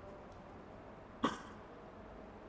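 One short cough about a second in, against a faint steady room hum.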